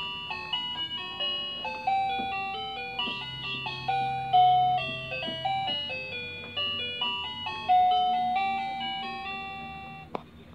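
Tinny electronic melody from a baby walker's musical toy tray: a chiming tune of quick stepped notes, each striking sharply and then fading.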